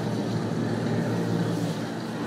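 Domestic cat purring steadily while having its head scratched, held close to the microphone.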